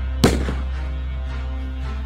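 Dark, sustained intro music with held low tones, struck by a single loud crack about a quarter second in that rings away over about half a second.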